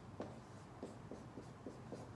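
Marker writing on a whiteboard: about half a dozen short, faint strokes as a term is written out.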